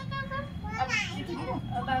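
Several voices talking together around a newborn baby, who gives a short high-pitched cry about a second in.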